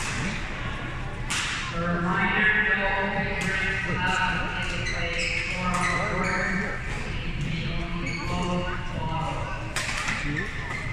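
Badminton rackets striking a shuttlecock during a doubles rally: sharp hits a second or two apart, ringing in a large hall.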